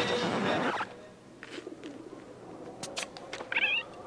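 Animated penguin squawk: a short, high, warbling call about three and a half seconds in, with a few soft taps before it. A louder mix of music and sound cuts off about a second in.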